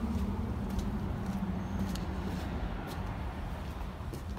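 Pickup truck engine idling with a low, steady rumble through its dual sport exhaust, fading about halfway through. A few faint ticks are heard over it.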